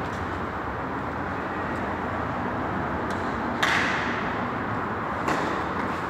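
Tennis racket striking the ball on a covered clay court over a steady background hiss: one loud, sharp hit about three and a half seconds in that echoes briefly, then a fainter hit about a second and a half later.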